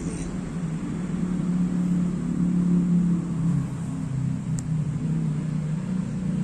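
A low, steady engine hum, growing louder toward the middle and then easing off.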